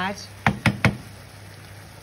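Three quick knocks in a row about half a second in: a wooden spoon tapped against the rim of a stainless steel frying pan.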